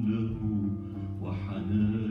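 Oud being played, a run of plucked notes, with a man's voice singing along.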